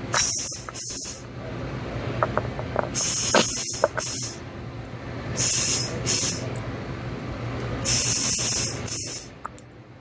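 Handling noise from a gloved hand working close to the microphone: about five short bursts of high hissing rustle. A few faint light clicks near the middle come from a metal pick working a guide band out of a plastic actuator end cap, over a steady low hum.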